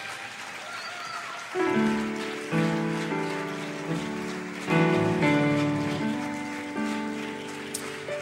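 Instrumental intro of a slow rock song played live. About a second and a half in, a sustained chord sounds, followed by a few more chords, each struck and then left to fade. Before it there is faint audience noise.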